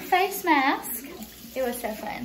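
High-pitched voices making short exclamations without clear words: two loud swooping cries in the first second, then quieter voices.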